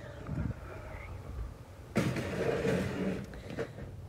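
Wind and handling noise on a handheld camera's microphone as it is swung about: brief low rumbles in the first half, then a rustle of clothing against the microphone from about halfway through, lasting a second and a half.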